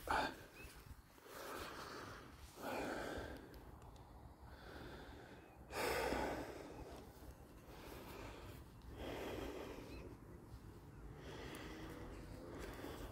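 A person breathing audibly close to the microphone, slow breaths a few seconds apart, the loudest about six seconds in.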